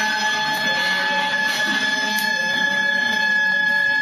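Gagaku court music accompanying a Shinto dance: a wind instrument holds one long, steady, high note over a lower sustained sound.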